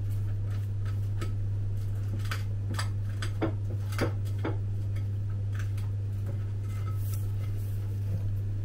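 A steady low hum with a scattering of light, irregular ticks and clicks, such as a soup tin being turned slowly in the hand.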